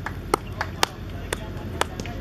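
Scattered hand claps from a few people, sharp single claps at an uneven two or three a second, applauding the batsman.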